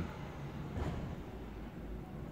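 A plastic spoon scraping through softened, partly thawed ice cream in the tub, a faint brief scrape about a second in, over a low steady rumble.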